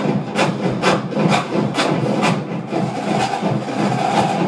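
Marching drumline percussion played over home-theatre speakers: crisp drum strokes about twice a second over a steady low drum rumble.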